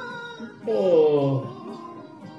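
A man's loud, drawn-out vocal exclamation, falling in pitch and lasting under a second, over dangdut duet music playing underneath.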